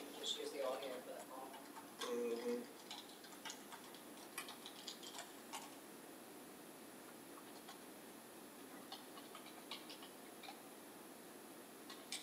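Quiet room tone with faint, muffled voices in the first few seconds, then scattered light clicks and ticks.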